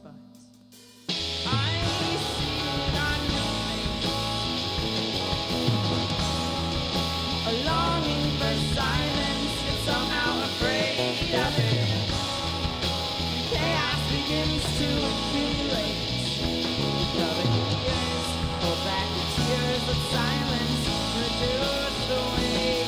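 Indie rock band playing live: drums, bass, electric guitar and keyboard. After a brief hush, the full band crashes in together about a second in and plays on loud and dense.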